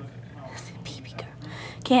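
A woman whispering softly in short breathy snatches, then speaking aloud just before the end.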